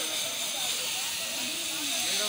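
Water gushing steadily from a stone spout into a shallow stone channel, a continuous splashing rush.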